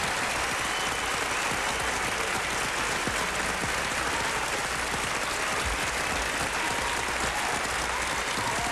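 Large audience applauding steadily, a thick even clapping that does not let up.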